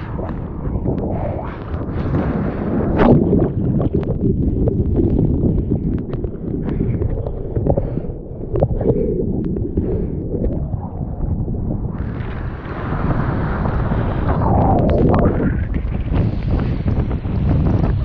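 Sea water sloshing and splashing around a waterproofed action camera at the water's surface as a bodyboard is paddled through whitewater, over a continuous low rumble of surf and wind on the microphone. A hissier rush of foam and spray comes about two-thirds of the way through.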